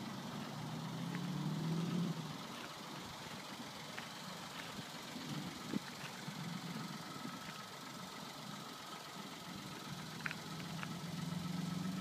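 A car engine running with a low hum, louder in the first two seconds and again near the end, with a few faint clicks.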